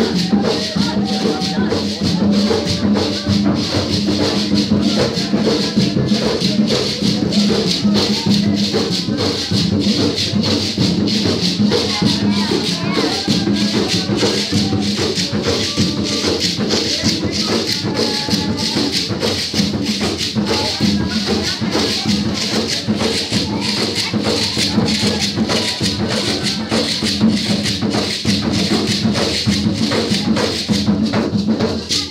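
Live percussion music: rattles shaken in a fast, steady rhythm, with voices over it.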